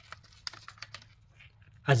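Small plastic clicks and taps from a gloved hand handling a camshaft position sensor and its wiring connector: a quiet run of separate ticks over about a second and a half.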